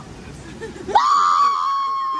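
Churning water for the first second, then a person on a river-raft ride screams: one long high scream that starts suddenly about a second in and is held steady.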